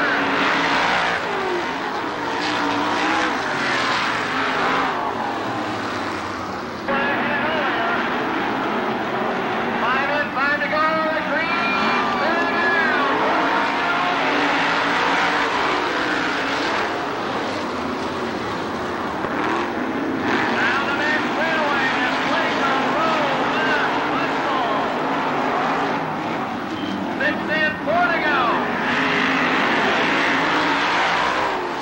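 Winged dirt-track sprint cars racing, their V8 engines running hard together. Engine pitch rises and falls as cars pass and lift for the turns, clearest about a third of the way in and again near the end.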